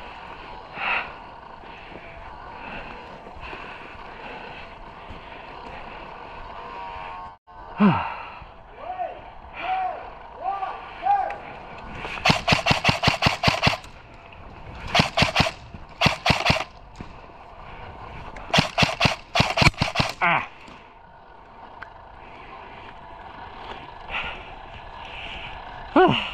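Airsoft rifle firing three rapid full-auto bursts in the second half, each a quick string of sharp clicking shots lasting one to two seconds.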